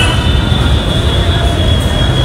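Loud, steady street background noise: a deep, fluctuating rumble with faint steady high tones above it.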